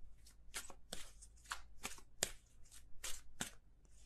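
A deck of tarot or oracle cards being shuffled by hand: a run of short, crisp shuffling strokes, about three or four a second.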